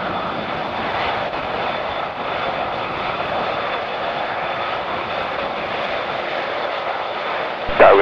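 The four Engine Alliance GP7270 turbofans of an Airbus A380-861 running at low thrust as the airliner taxis and turns onto the runway. The sound is a steady, even rush with a faint high whine on top.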